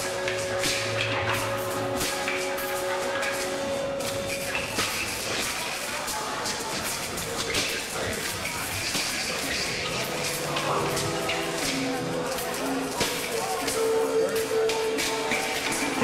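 Live rock band in a loose, quiet passage: electric guitars holding sustained notes that shift every few seconds, with scattered clicks and taps and a voice in the mix.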